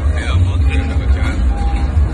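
People's voices over a steady, heavy low bass rumble: the loud sound of a crowded ballroom party with amplified music.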